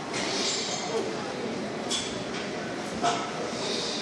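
Gym ambience with background voices and three sharp metallic clinks of weights, about a second apart, the last the loudest and briefly ringing.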